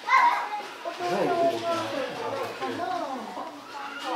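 Onlookers' voices: children talking and calling out, with a laugh just after the start and an adult speaking over them.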